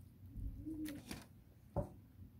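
A person taking a bite of fried chicken: a short low hummed "mm" in the first second, faint crunch-like clicks about a second in, and a brief voiced sound near the end.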